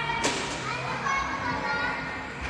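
Children shouting and calling out during an indoor football game, with one sharp knock of the ball being struck about a quarter of a second in.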